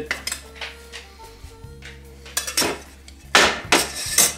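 Cookware clinking and knocking on a stovetop: a stainless steel pot being handled and set down beside an enamelled cast-iron pot. There are a few light knocks, then a cluster of louder clanks in the last second.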